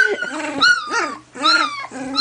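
Two-week-old blue merle collie puppy making several short, high-pitched yips and whimpers in quick succession, each call rising and then falling, with lower-pitched calls between them.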